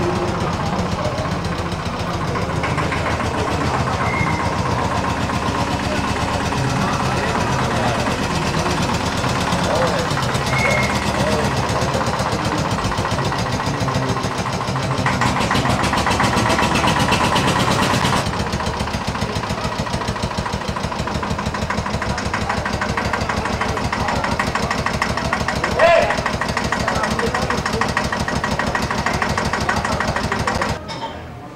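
Old tractor engine idling with a fast, regular beat under crowd chatter; its sound shifts about two-thirds of the way in, and there is a brief louder sound a few seconds before the end.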